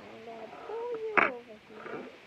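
A young girl's voice making a drawn-out wordless sound, its pitch wavering and then falling. A sharp, loud burst about a second in is the loudest moment.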